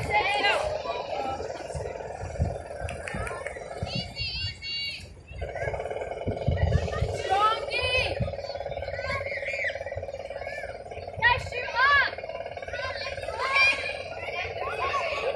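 Distant shouted calls from players during a touch football match, short and scattered, over a steady hum.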